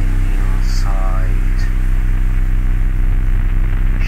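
Industrial ambient drone: a steady low electronic hum with a layer of static hiss over it.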